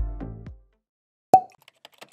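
The last notes of electronic intro music fade out within about half a second. After a short silence comes a single sharp pop sound effect, then a few faint ticks.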